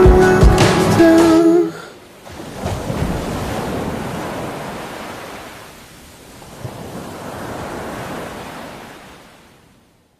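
Music stops about a second and a half in. Then ocean surf washes in two slow swells and fades out near the end.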